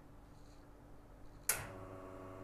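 The quiet is broken about one and a half seconds in by a sharp click as the group button of a Nuova Simonelli Appia Life espresso machine is pressed. The machine's pump then starts with a steady hum, the start of a backflush cycle through a blind portafilter.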